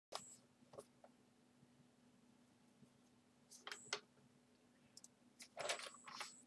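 Near silence, broken by a few faint, short rustles and clicks from a sheet of paper being handled.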